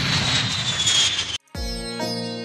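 Jet airliner fly-by sound effect: a rushing roar with a high whine falling in pitch, cut off suddenly about one and a half seconds in. Music with steady pitched notes starts right after.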